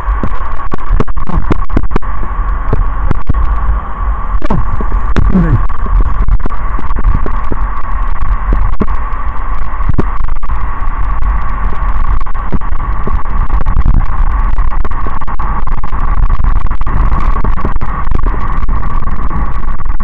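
Heavy wind buffeting and low rumble on an action camera's microphone mounted on a moving bicycle, with a steady high whine and frequent knocks and rattles from the mount over the pavement.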